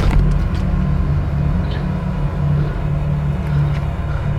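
A loud, steady low rumble with a slight pulsing and a faint thin tone above it.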